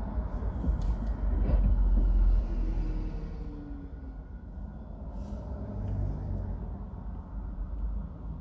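Low traffic rumble heard from inside a car as an articulated city bus pulls past close alongside. The rumble is loudest about two seconds in, where a brief falling whine sounds, and then eases.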